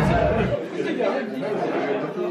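Indistinct chatter of several people talking in a busy dining room. A low rumble under it cuts off abruptly about half a second in.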